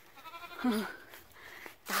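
A goat bleating faintly: one wavering call in the first second.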